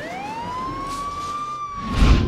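A single rising wail like a siren's, climbing over about a second and then holding steady. A loud low boom hits at the very end.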